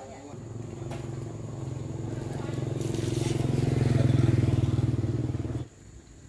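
A motorbike engine passes close by, growing steadily louder to a peak, then cuts off suddenly near the end.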